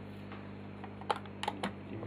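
A few sharp clicks in the second half as a crocodile clip on a multimeter test lead is handled, over a steady low hum.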